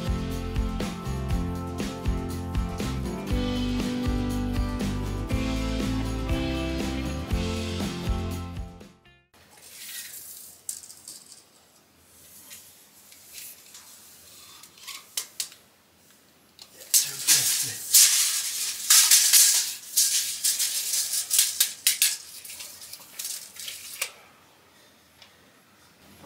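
Background music for about nine seconds, then stops abruptly. After that, loose stones and rubble are scraped and rattled by hand as a joist pocket in a rough stone wall is cleared out. This is loudest in a dense run of scraping in the second half.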